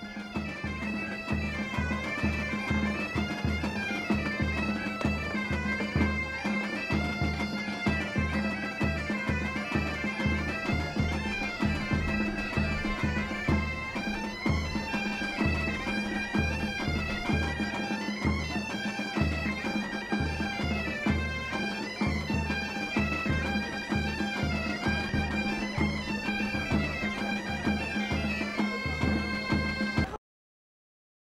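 Background music led by bagpipes: an ornamented melody over a steady drone, with a regular low drum beat. It stops abruptly at the very end.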